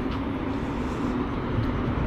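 Steady outdoor background rumble of road traffic, with a faint steady hum underneath.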